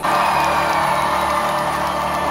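Live stage music with held notes under an audience cheering and whooping; it all starts abruptly.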